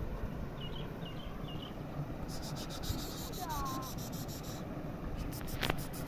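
Outdoor ambience with a steady low rumble of wind on the microphone. Over it come a few faint high chirps about half a second in, then a rapid high ticking trill lasting about two seconds in the middle, and one sharp click near the end.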